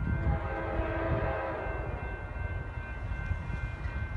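Approaching diesel freight locomotive sounding its horn, one chord lasting about a second and a half near the start, over the steady low rumble of the train.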